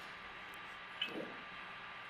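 Quiet room tone with a steady faint hiss in a pause between speech, with one brief faint sound about a second in.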